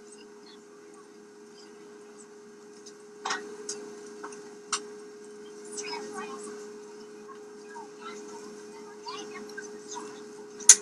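Boeing 747 passenger cabin ambience: a steady hum under indistinct chatter of passengers, with a few sharp clicks and clatters, the loudest about three seconds in and again near five seconds in.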